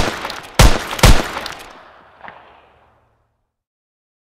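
Three gunshots in quick succession, about half a second apart, with a long echoing tail and a smaller crack a little after two seconds.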